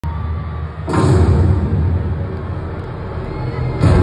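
Bass-heavy concert music played loud through an arena sound system, with crowd noise under it. A sudden loud hit comes about a second in and another near the end.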